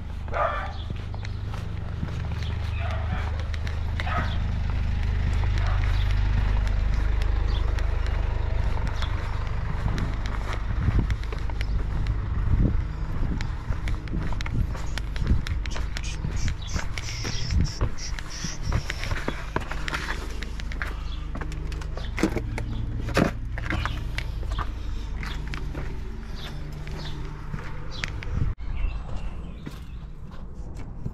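Footsteps and the knocks and rustles of a person walking and handling a parcel, over a steady low rumble that is loudest about six to eight seconds in.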